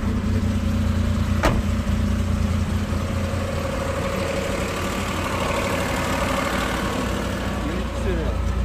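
Small three-cylinder engine of a Daewoo Tico idling steadily, with a single sharp click about a second and a half in.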